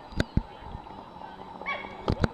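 Dog barking: two short, sharp barks a fraction of a second apart, then a brief higher yip near the end.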